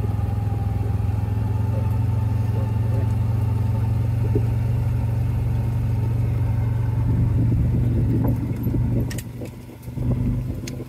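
Engine of a small vehicle running steadily, heard from on board as a continuous low hum. About nine seconds in it eases off and gets clearly quieter.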